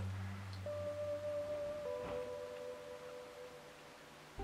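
Soft background music of held, ringing notes over a low bass tone; the bass drops out about a second in, new notes enter about halfway through, and it fades toward the end.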